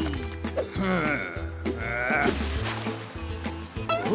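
Cartoon background music with a steady bass line. Over it come two short, wavering, bleat-like cries, about one and two seconds in.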